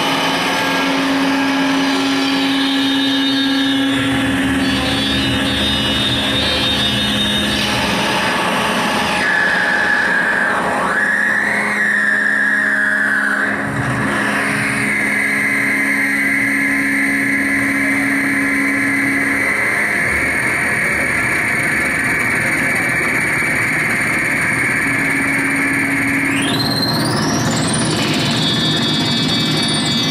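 Live analog synthesizer noise: a Doepfer modular synth and Moog FreqBox effects with a mixer feedback loop, making a dense, continuous wash of electronic noise over a low drone. From about ten seconds in a high, whistling tone wavers and then holds steady. Near the end a sweep rises steeply in pitch and slides back down.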